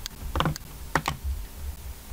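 A handful of sharp, separate clicks from computer mouse and keyboard use, spread unevenly over two seconds.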